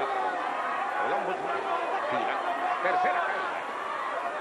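Men talking, the overlapping voices of a broadcast commentary with crowd noise behind.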